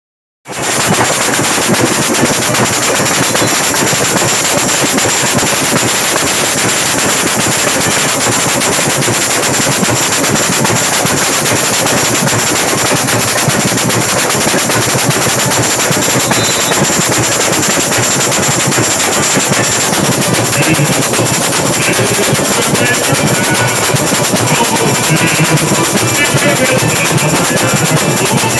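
Samba bateria playing a fast, unbroken samba rhythm, loud and dense. Chocalho jingle shakers ring out over surdo bass drums. It starts suddenly about half a second in.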